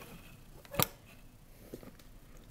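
Soft handling of nylon paracord as it is pulled through a cobra knot, with one sharp click a little under a second in and a few faint ticks later.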